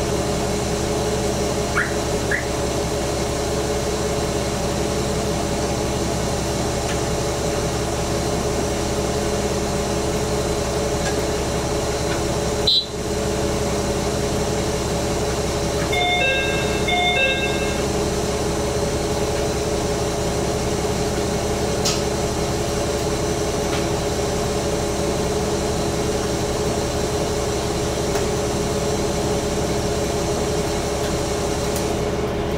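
Diesel railcar idling while stopped at a station platform, with a steady engine hum. About 13 seconds in there is a single sharp click, and around 16 seconds a short two-tone electronic chime sounds twice in quick succession.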